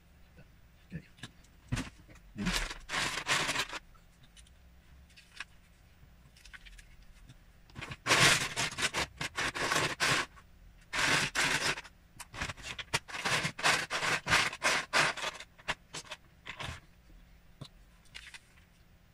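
Loose plastic Lego bricks clattering and scraping as a hand rummages through a plastic storage bin. The rummaging comes in several bursts of one to two seconds each, with small clicks between them.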